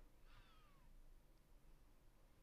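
One faint, short cat meow, falling in pitch, over near-silent room tone.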